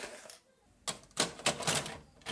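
Plastic clicks and knocks of a VHS cassette being handled and pushed into the loading slot of a video recorder. There is a single click at the start, then a quick run of clicks and clatter in the second half.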